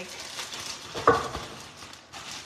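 Compostable plastic bag rustling and crinkling as it is handled and lifted out of a glass, with one short louder rustle about a second in.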